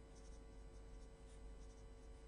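Faint pen scratching on paper, a few short strokes, over quiet room tone with a steady hum.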